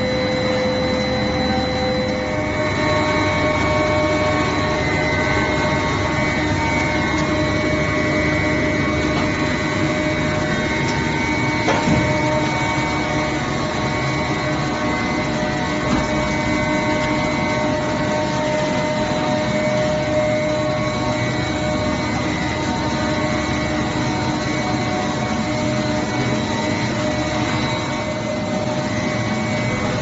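Plastic film recycling pelletizing line running: the shredder-compactor and extruder make a steady machine noise with several steady whining motor tones. A single sharp knock comes about twelve seconds in.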